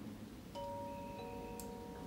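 Two-note doorbell chime: a first ding about half a second in and a lower second note about half a second later, both left ringing.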